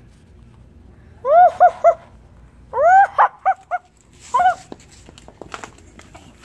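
A run of loud, high-pitched, dog-like yelps: three short ones, then four, then one more, each rising and falling in pitch. Several light sharp knocks follow near the end.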